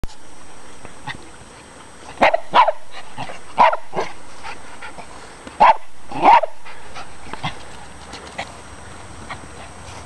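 Poodles barking in short, sharp barks: three a couple of seconds in, and two more about six seconds in.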